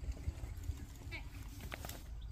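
Outdoor ambience on a stone-paved road: a steady low rumble of wind on the microphone, a few light taps and clicks on the stones, and faint voices in the background.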